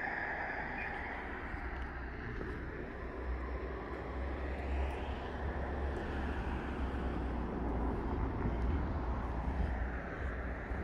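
Road traffic: cars driving past with a continuous wash of engine and tyre noise, one car swelling louder about midway, over a steady low rumble on the microphone.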